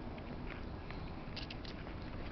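Footsteps of a walker and a leashed dog on an asphalt path over steady outdoor noise, with a few light clicks and scuffs, a small cluster of them past halfway.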